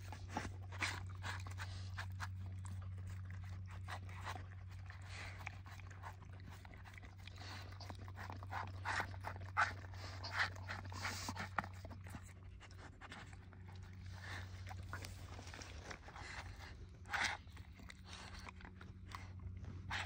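A dog chewing and crunching broccoli and other food pieces, irregular wet crunches and mouth clicks with a few louder crunches near the middle and late on. A steady low hum sits underneath.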